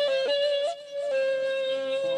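Persian ney playing a melody in the Shushtari mode: a strong, sudden entry with quick ornamental turns, a short break, then a long held note that wavers slightly.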